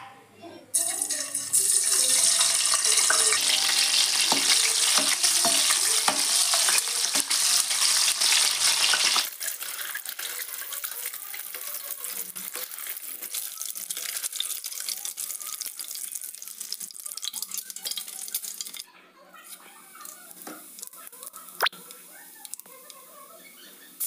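Peeled boiled eggs frying in hot oil in a pan: a loud sizzle that drops suddenly to a quieter crackling about nine seconds in, with small taps of a slotted spatula turning them. The frying sound falls low about nineteen seconds in.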